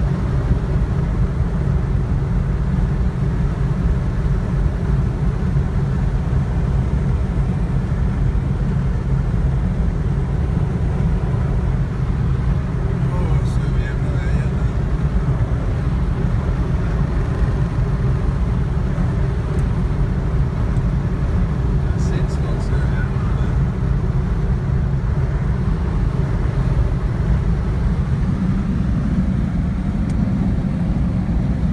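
Steady low rumble of road and engine noise inside a moving car's cabin.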